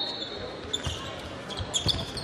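Sounds of play on a hardwood basketball court: the ball bouncing and sneakers squeaking. A long high squeak fades out in the first second, and several short squeaks come near the end.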